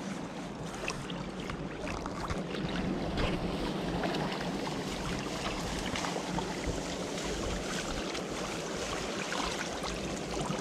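Water sloshing and splashing as people wade and push a large framed sieve net through a shallow stream, then lift it so the water drains through the mesh.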